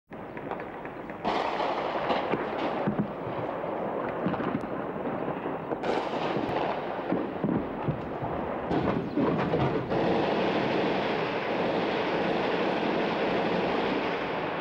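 Gunfire and shell explosions in a city under bombardment: sharp cracks and bangs over a dense, steady rumbling noise, which jumps abruptly louder about one second in and again near six seconds.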